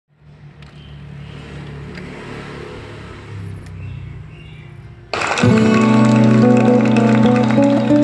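Sansui CD-α9 CD player's tray closing and the disc loading, a quieter mechanical hum, then about five seconds in music starts suddenly through the Onkyo D-202A LTD loudspeakers, an instrumental intro of sustained notes.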